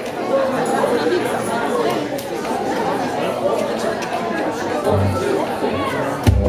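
Audience chatter: many people talking at once in a hall, with a brief low instrument note near the end.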